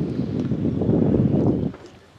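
Wind buffeting the microphone: a loud, low rumble that dies away about a second and a half in.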